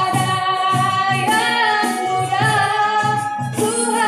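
A woman singing a slow Indonesian melody into a microphone, accompanied live by violin and acoustic guitar, with a regular low pulse underneath; a poem set to music.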